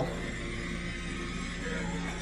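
Low steady hum with faint background music underneath; no distinct sound from the kitten's play stands out.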